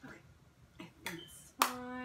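A few faint soft clicks, then a sharp click about one and a half seconds in as a woman's voice starts on a drawn-out held note.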